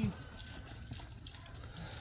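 Water poured from a jug onto a smoking mower fire, a faint trickle.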